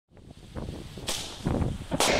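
Small ground firework set off by an electric igniter, fizzing, with a sharp hissing whoosh about a second in and another burst shortly before the end. Wind is rumbling on the microphone.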